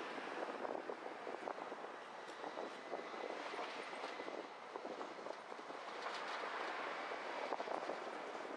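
A car driving slowly on rough, patched pavement: steady tyre and road noise with frequent small clicks and rattles.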